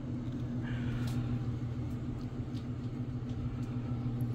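A steady low hum, with faint rustles and light ticks over it.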